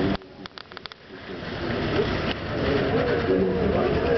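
Wind rushing over the microphone on a moving ship's open deck, with some faint voices in it. Just after the start the rush cuts out suddenly and a few sharp clicks follow. It then builds back up over the next second or so.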